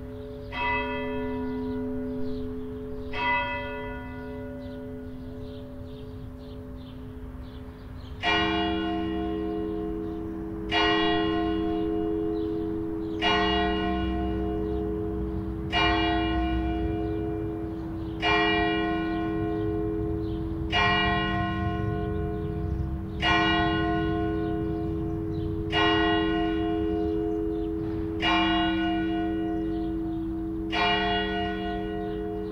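Växjö Cathedral's church bells ringing, one strike about every two and a half seconds, each left to hum out. About eight seconds in, the ringing turns louder and deeper-toned.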